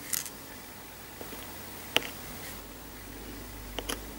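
Faint clicks of a craft knife's blade tip against the work surface, two sharp ones about two seconds apart, over a low steady hiss, as tiny pieces of polymer clay are cut and placed.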